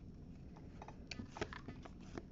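Trading cards being handled in the hands: faint short clicks and rustles as the cards are slid one behind another, mostly in the second half.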